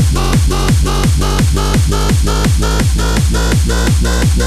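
Hard house / happy hardcore dance music: a fast, steady kick drum with a deep bass line under it and short repeating synth notes on top.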